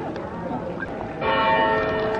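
A large church bell in the tower of Basel Minster strikes about a second in and rings on with several steady tones, over people chattering.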